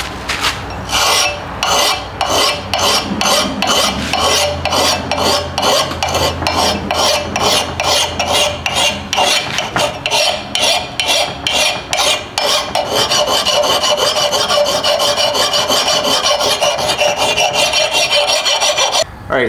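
A steel mill file rasping in rapid, repeated strokes across the edge of an old double-bitted axe head, grinding a chipped, dull bit back to a rough working edge. The strokes run together more continuously in the last few seconds.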